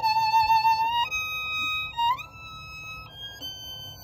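Solo violin playing a slow phrase of long held notes, each about a second, with a slide up into a higher note about two seconds in; the playing grows softer in the second half.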